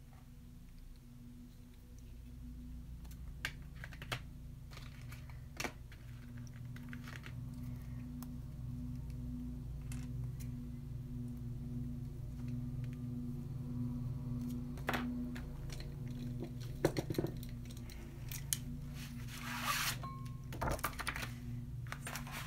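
Paint tubes and palette paper being handled while gouache is set out: a few sharp clicks, then a rustling, sliding stretch of paper near the end. Under it runs faint background music with a steady low pulse.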